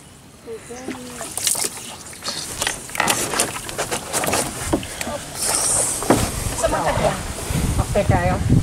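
Water splashing and sloshing against a small wooden outrigger canoe as it moves across a pond, with scattered short knocks and splashes throughout.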